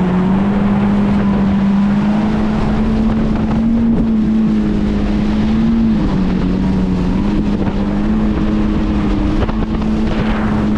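Yamaha VX Cruiser HO WaveRunner's 1.8-litre four-stroke engine running hard at cruising speed, a steady drone over the hiss of the jet and spray. The pitch dips slightly about six seconds in, then holds.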